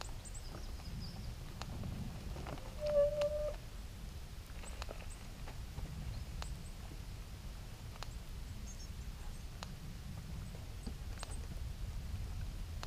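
Outdoor background of a steady low rumble, with scattered faint ticks and faint high chirps. One short, steady squeak about three seconds in is the loudest sound.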